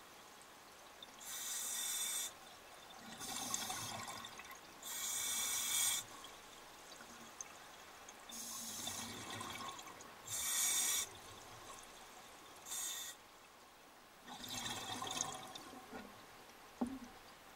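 Scuba diver breathing through a regulator underwater: a repeating series of about seven rushing breaths and bubble releases, each around a second long, with quieter gaps between.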